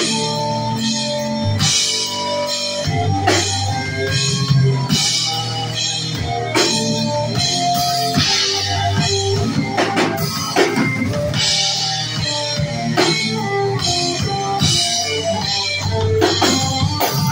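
A live rock band playing steadily: electric guitar, bass guitar and a drum kit with cymbals, with no break.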